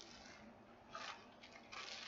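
Faint rustling of packaging being handled as a diamond-painting kit is opened, in two short bursts: one about a second in and a slightly longer one near the end.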